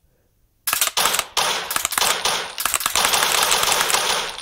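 AR-15 trigger pulled in rapid dry fire with a Mantis Blackbeard auto-reset unit in place of the bolt carrier: a fast run of mechanical clicks as the trigger breaks and the unit resets it after each pull, starting about half a second in.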